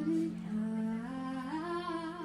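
Female lead singer of a live rock band holding a long sung note with a steady vibrato, over a sustained low note from the band, as the song closes.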